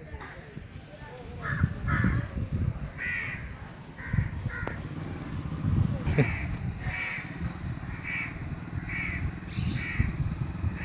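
A crow cawing over and over, roughly once a second.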